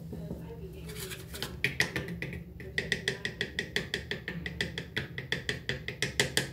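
Fingers tapping rapidly on a plastic deodorant stick: a quick, steady run of light, hollow taps, several a second, starting about a second in.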